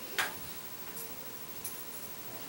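A pause with low room tone and three short clicks: the loudest about a quarter second in, two fainter ones later.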